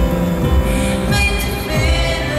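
Live pop band music in a large arena: held chords over a steady drum beat, heard from the audience.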